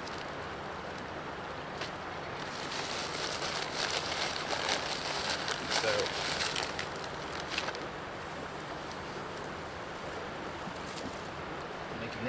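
A crinkly plastic bag being handled and rummaged through, a crackling rustle that starts a couple of seconds in and dies away after about five seconds.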